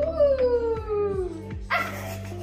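Background music, over which a long vocal cry rises and then falls slowly in pitch for about a second and a half. A sudden noisy burst follows near the end.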